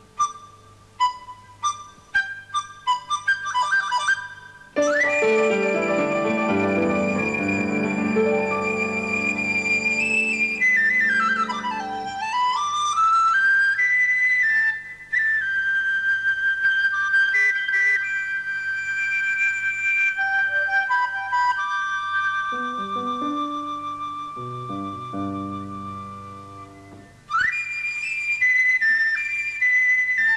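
Duet of Chinese flutes playing a cheerful tune: short detached notes at first, then long held high notes over lower chords, with a swooping run down and back up about ten seconds in.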